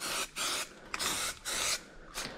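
Aerosol can of peelable rubber spray paint hissing in four short bursts, each under half a second, as the paint is sprayed on.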